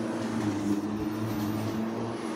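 A steady low machine hum with a few even tones, like an idling engine, with a faint high whine from about a second in.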